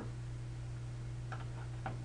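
Steady low electrical hum picked up by the microphone, with a few faint short sounds about a second and a half in.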